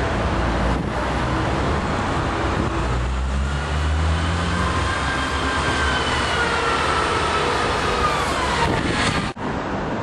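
Road traffic noise with a steady low rumble. A high whine falls in pitch from about halfway through until near the end, as a vehicle slows. The sound drops out abruptly for a moment shortly before the end.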